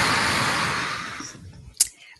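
A loud rushing noise with no pitch to it, like air or handling noise on a call microphone, that fades away over about a second and a half, followed by a single short click near the end.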